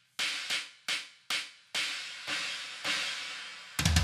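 Roland TD-25 V-Drums stacked-cymbal sound, enlarged to a 40-inch size, struck about seven times on the electronic ride pad. The early hits die away quickly and the later ones ring a little longer. Just before the end, bass drum and snare come in with a fill.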